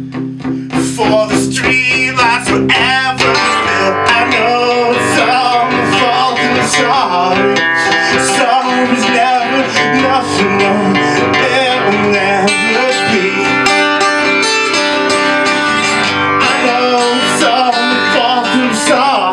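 Live steel-string acoustic guitar strummed in a song, with a man singing over it from about three seconds in.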